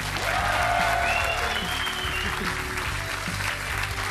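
Studio audience applauding steadily, with music playing underneath.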